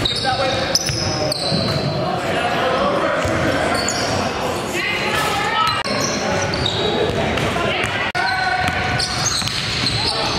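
Basketball game sound in a large reverberant gym: indistinct voices of players and onlookers with a basketball bouncing on the hardwood, broken by brief drops at the clip edits.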